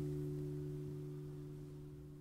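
Final chord of an acoustic guitar ringing out, a few held notes fading away steadily with no new strums, as the song ends.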